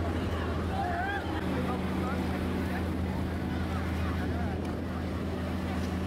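A steady low motor hum, with people's voices chattering over it.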